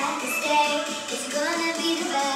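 A girl singing a melody with held, gliding notes over backing music.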